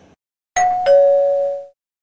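Two-note descending electronic chime about half a second in: a higher tone, then a lower one about a third of a second later, both ringing out together for about a second. It is the attention signal that precedes a train's on-board passenger announcement.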